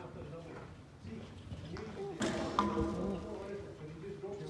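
Indistinct voices, with a sudden thud or knock a little past halfway that is the loudest moment.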